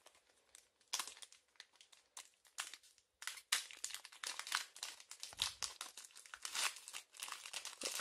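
Foil booster-pack wrapper of a Pokémon Hidden Fates pack crinkling and tearing as it is pulled open by hand: a run of sharp crackles that starts about a second in and grows denser and louder after about three seconds.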